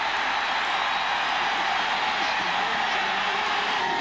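Stadium crowd cheering steadily for a home-team touchdown.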